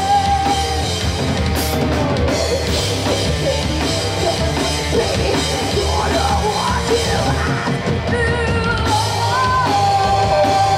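Heavy metal band playing live: distorted electric guitars, bass and drum kit, with a singer's vocals. A long held note falls away at the start, and held notes come back near the end.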